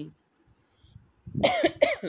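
A person coughing twice in quick succession, starting about a second and a half in.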